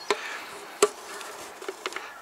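Putty knife working two-pack builder's bog on a mixing board, with one sharp tap a little under a second in, over a faint steady buzz.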